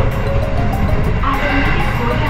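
Train running along the track, a steady low rumble heard from inside the carriage, under background music.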